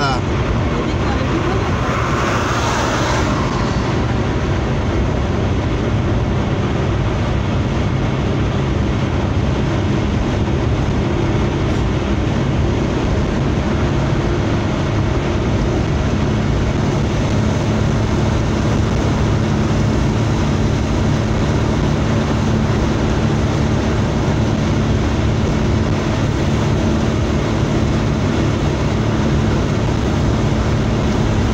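Steady road and engine drone inside a car's cabin at motorway speed, with tyre rumble and a faint steady engine tone. A brief louder hiss comes about two seconds in.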